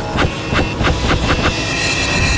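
Electronic intro sound design: a fast run of ticking clicks, about five a second, over a low rumble and a steady high tone, swelling into electronic music near the end.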